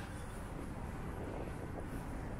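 Street ambience: a steady low rumble of city traffic.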